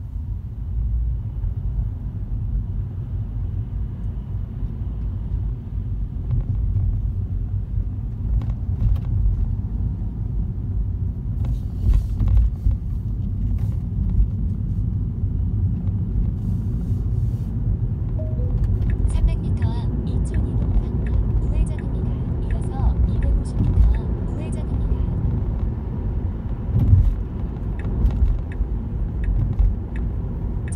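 Low, steady road and tyre rumble heard inside a moving Tesla's cabin, with no engine note, as it is an electric car. Faint scattered clicks come in during the second half.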